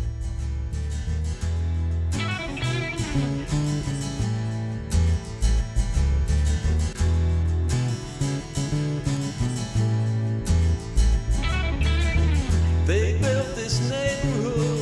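Instrumental break in a country-style song: guitar playing over a line of changing bass notes.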